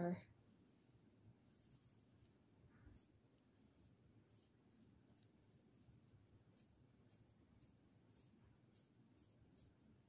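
Faint scratching of a watercolor brush stroked across paper, short irregular strokes coming more often in the second half.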